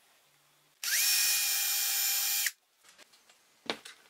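Electric drill running briefly: the motor spins up with a short rising whine, runs at a steady high pitch for under two seconds and cuts off suddenly. A single sharp click comes near the end.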